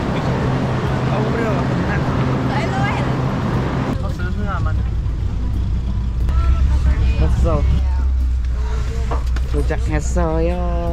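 Several people talking over a steady low engine hum; the hum drops in pitch and grows stronger about four seconds in.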